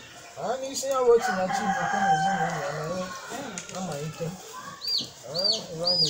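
A rooster crows once, a long loud call in the first half, over a low wavering voice. Near the end a bird gives a high rising-and-falling chirp, repeated about twice a second.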